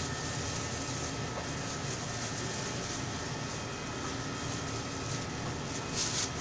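Steady background hum and hiss of running machinery, with a faint steady high whine over it.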